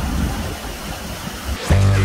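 Low, uneven rushing noise of wind and waves at the shore. About one and a half seconds in, electronic music cuts in suddenly with a loud, sustained deep bass note.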